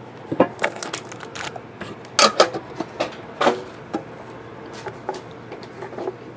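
Metal card tin handled and worked open by hand: irregular light clicks and knocks of metal, the loudest a little after two seconds in and again about three and a half seconds in.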